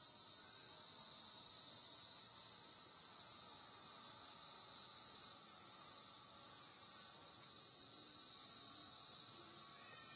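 Steady, unbroken high-pitched buzzing of an insect chorus, such as cicadas or crickets in the trees.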